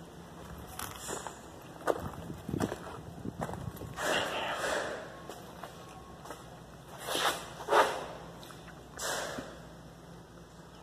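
Irregular footsteps and knocks mixed with rustling handling noise, with louder noisy bursts about four, seven and nine seconds in.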